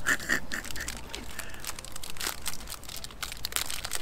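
Plastic snack wrapper crinkling and tearing as it is pulled open by hand: a string of short, irregular crackles.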